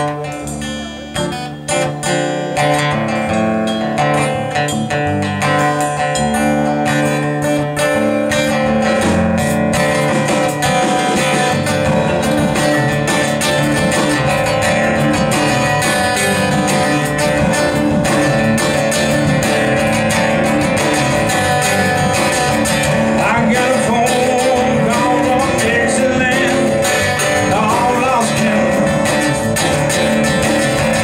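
Live blues song on acoustic and electric guitars, starting sparse and settling into a steady full band sound after about eight seconds, with sliding, bending high notes near the end.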